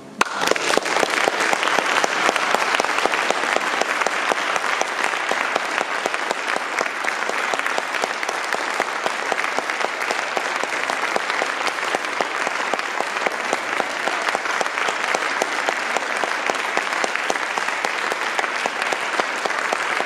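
Audience applause, many hands clapping, breaking out abruptly and then holding steady and dense.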